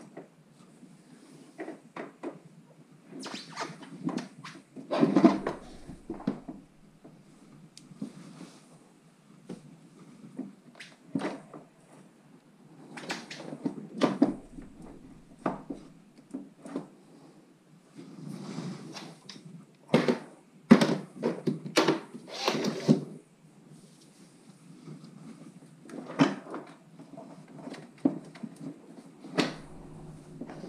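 Irregular clunks, knocks and scrapes as a KTM 1190 Adventure's rear wheel is lifted and jiggled into the swingarm, its new wave brake disc being worked in between the caliper pads. The loudest knocks come about five seconds in and again around twenty to twenty-three seconds.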